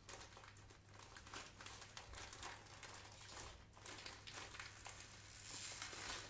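Thin clear plastic packaging crinkling faintly in the hands in short, irregular crackles as the bag is pulled open.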